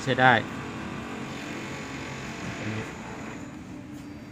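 Background traffic noise, a steady hiss that swells slightly in the middle and fades near the end, after a couple of spoken words at the start.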